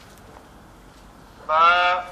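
Enmac PQ15 Quran reading pen's built-in speaker voicing an Arabic letter name as its tip touches the alphabet chart: one held syllable about one and a half seconds in, lasting about half a second.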